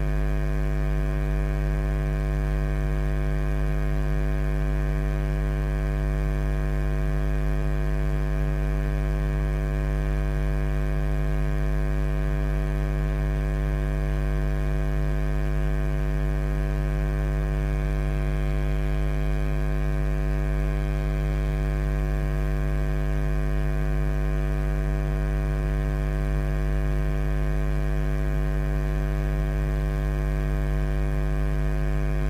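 Loud, steady electrical mains hum: a buzz with many overtones that does not change at all. No voice comes through, even though a lecture is going on, which points to a faulty audio feed that is recording hum in place of the microphone.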